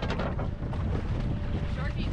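Wind buffeting the microphone on an open boat in choppy seas: a steady low rumble.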